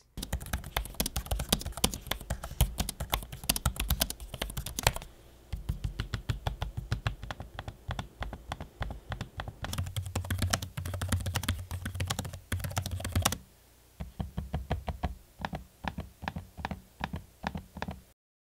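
Laptop keys and trackpads of the Razer Blade 15 Advanced and ASUS ROG Zephyrus G15 being typed on and clicked in turn. Stretches of fast, dense key clatter alternate with sparser, slower clicking, with a short break about three-quarters of the way through.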